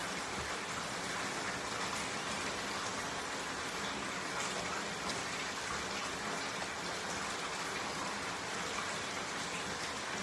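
Steady, even rushing hiss with no distinct events, like running water or rain.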